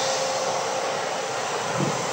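Steady rushing hiss of ocean surf and wind, even and unbroken.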